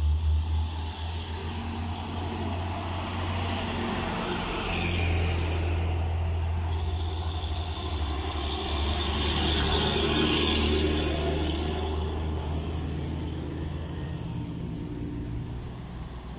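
Road traffic passing close by. An SUV goes past right at the start. Then a medium-duty Hino diesel truck passes with a low engine drone and tyre noise, loudest around the middle, and a small car comes up near the end.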